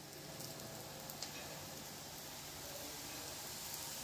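Thin pancakes frying in pans on a gas stove: a steady sizzle that fades in over the first second, with a few small crackles.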